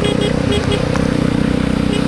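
Motorcycle engine running steadily at cruising speed, with wind and road noise on a wet highway.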